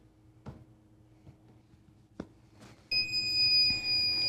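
A tumbler heat press's timer beeper sounds one long, steady, high-pitched beep, signalling the end of the 60-second pressing cycle.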